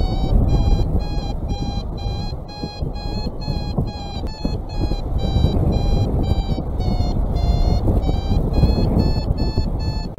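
Paragliding variometer beeping in quick, evenly spaced pulses, about three a second, with the pitch shifting slightly: the climb tone that signals the glider is going up in lift. Wind rushes over the microphone underneath.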